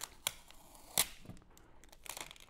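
Packing tape being stripped off the metal base of a CPU heatsink, giving a few short, sharp snaps, the loudest about a second in. The tape is lifting leftover thermal paste, and it grips the metal harder as the surface comes cleaner.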